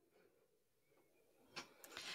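Near silence: room tone in a pause of the conversation, with a short, faint murmured "mm" near the end.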